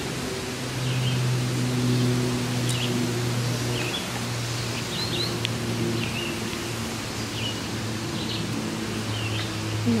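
Short, scattered bird chirps over a steady low hum and an even outdoor hiss in woodland.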